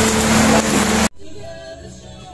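Loud sizzling of vegetables frying in a wok over a wood fire, with a steady low hum under it. The sizzling cuts off abruptly about a second in, and soft background music with singing follows.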